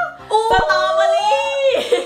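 A short sung jingle: a voice holding three or four notes that step up and down in pitch, with a brief low thump about half a second in.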